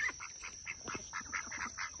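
A flock of white domestic ducks chattering in quick, short quacks, several a second.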